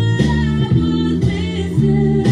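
Electric bass guitar playing a line of sustained low notes that change about twice a second, over a backing recording of an R&B song with a woman singing.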